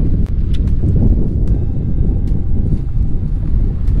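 Wind buffeting the microphone, a loud steady low rumble, with a few scattered sharp clicks over it.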